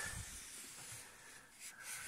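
Faint rubbing of a cloth rag wiped along a rubber hood seal, taking excess silicone off the rubber, with a couple of soft knocks near the start.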